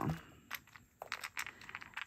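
A small clear plastic storage case and the pin backs inside it being handled: a few faint, sharp clicks and taps, spaced irregularly.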